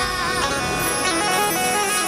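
Instrumental interlude of a live Rajasthani devotional bhajan: dholak drumming under sustained keyboard and harmonium tones, with no voice between sung lines.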